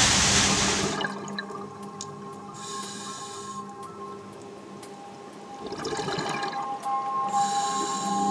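Water gushing and splashing, loud for about the first second, then cutting off. Calm ambient music with long held tones follows.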